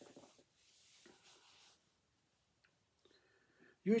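A man's soft breaths through a pause in his talk, then a few faint mouth clicks, before he starts speaking again near the end.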